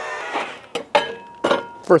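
Metal tortilla press being worked by its lever: a few sharp clanks and clinks of metal on metal, one with a brief ring, in the second half.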